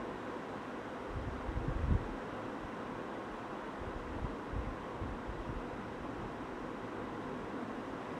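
Steady background hiss from the recording microphone, with a few soft low thumps about a second in and again around the middle.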